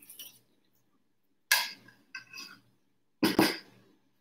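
A few clinks and knocks of glass and dishware being handled, with a short ringing clink about two seconds in and a heavier knock near the end.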